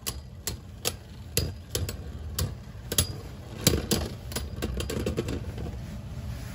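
Two Beyblade spinning tops clashing in a plastic stadium: sharp, irregular clacks as they hit each other, several a second. The clacks thin out near the end as the tops wind down and come to rest.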